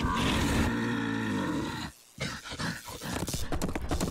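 Cartoon sound effect of a robotic mechanical bull bellowing: one long, loud roar of about two seconds that cuts off suddenly, followed by a few softer mechanical knocks.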